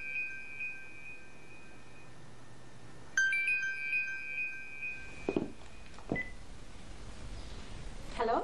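Mobile phone ringing with a chime-like ringtone: a short run of bell tones that rings out, then starts again about three seconds in. Two soft knocks follow near the end.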